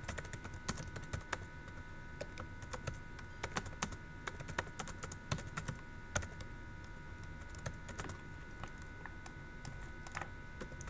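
Typing on a computer keyboard: a quiet, irregular run of key clicks. A faint steady whine runs underneath.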